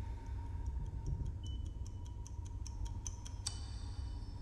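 Film sound design: a low steady drone under ticking that speeds up and grows louder, with a short electronic beep about a second and a half in. It ends in a sharp metallic hit that rings on, about three and a half seconds in.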